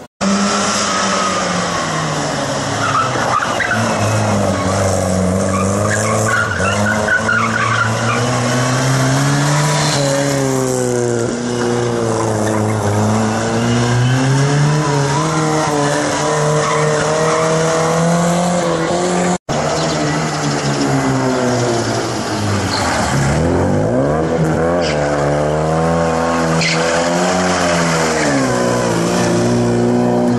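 A classic Mini's four-cylinder engine revving up and down repeatedly as it is driven hard through a tight cone course, with tyre squeal at times. The sound breaks off for an instant about 19 seconds in and resumes with the same rising and falling engine note.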